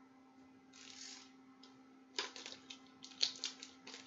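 Album packaging being handled: a soft rustle about a second in, then from about halfway a quick run of sharp, irregular crinkles and clicks. A faint steady hum lies underneath.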